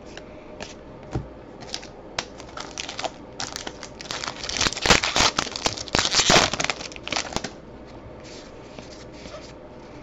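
A 2019 Topps Allen & Ginter trading-card pack wrapper being torn open and crinkled by hand. The crinkling runs from about three and a half seconds in to about seven and a half seconds, loudest in the middle, with a few light handling clicks before it.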